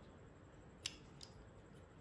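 Near silence broken by one sharp click of hard plastic parts being handled about a second in, with a fainter tick just after.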